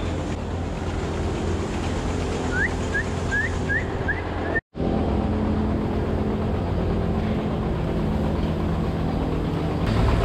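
Steady hum of milking-parlor machinery: a ventilation fan and the milking system running. About two and a half seconds in comes a quick run of six short, high rising chirps. Just before the middle, all sound cuts out for a split second.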